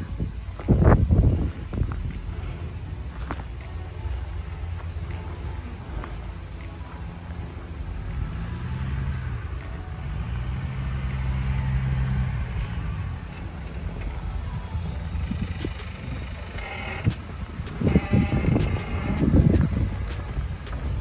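Lifted Jeep Wrangler's engine pulling at low speed as it climbs a steep grassy mound. The revs rise about halfway through, dip briefly, then rise again and hold for a few seconds before easing off.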